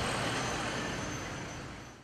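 Street traffic noise, a steady even rush of passing vehicles, fading away near the end.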